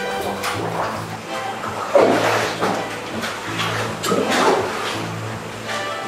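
Background music with steady held notes. Two short, wet rustling swishes come about two and four seconds in, as damp sheets of handmade kozo washi are peeled from the pressed stack.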